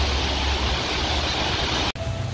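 Artificial rock waterfall rushing steadily, a continuous noise of falling water with a low rumble underneath, breaking off abruptly near the end.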